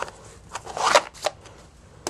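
A stack of Yu-Gi-Oh! trading cards being handled: a few short rustling, sliding strokes of card against card, the fullest just before a second in.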